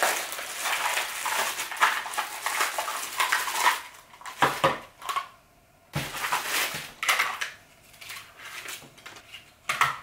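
Plastic packaging crinkling and rustling as small accessories are unwrapped, then a few separate clacks of hard plastic parts being set down and fitted onto the egg cooker base.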